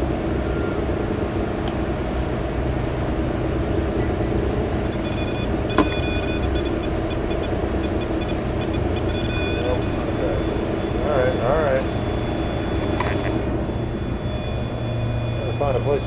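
Steady background hum made of several held tones, with brief snatches of indistinct voice about eleven seconds in and again near the end, and a single sharp click about six seconds in.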